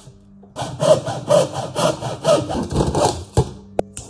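PVC pipe being cut with a hand saw: rapid back-and-forth strokes, about three a second, starting about half a second in and stopping shortly before the end, followed by a brief click.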